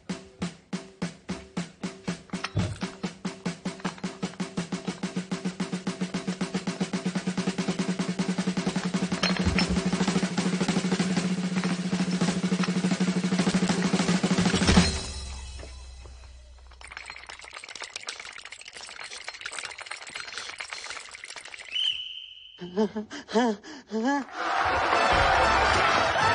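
Film background score: a drum roll over a steady low drone, its strikes speeding up and growing louder for about fifteen seconds before cutting off suddenly. A quieter stretch follows.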